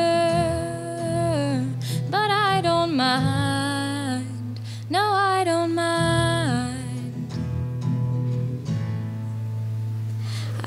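A girl singing in three phrases of long held notes while strumming chords on an acoustic guitar; after about six and a half seconds only the guitar carries on.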